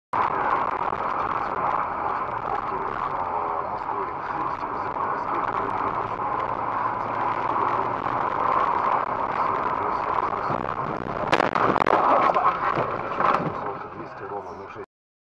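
Steady road and cabin noise from a car driving on a wet street, recorded inside the car by a dashcam. Several sharp, loud knocks come between about eleven and thirteen seconds in.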